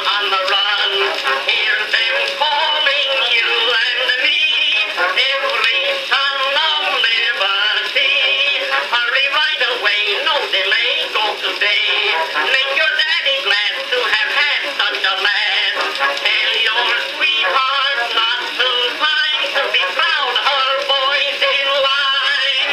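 Edison Amberola DX cylinder phonograph playing an Edison Blue Amberol cylinder: an early acoustic recording of band music. It sounds thin and horn-like, with almost no bass.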